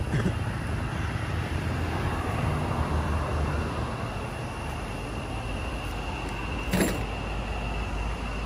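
Cars and a motorbike passing on a highway, a steady noise of tyres and engines that swells and eases as vehicles go by, with a steady thin high-pitched tone behind it. A short sharp click about seven seconds in.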